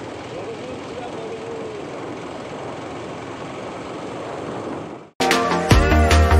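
Steady rushing wind and road noise on the camera microphone of a motorcycle on the move. It is cut off suddenly about five seconds in by music.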